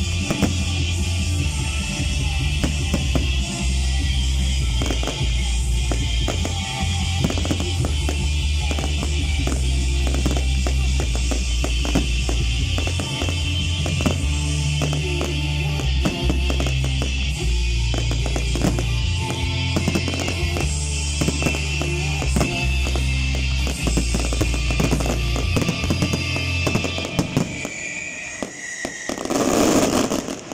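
Aerial fireworks bursting, with many sharp bangs and crackles under loud music that has a heavy bass line. The music drops away about three seconds before the end, and a loud burst of fireworks follows.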